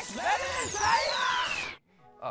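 Sound effects for an animated title stinger: a high whistling tone glides steadily down over about a second and a half, over warbling, zapping effects, and cuts off suddenly near the end.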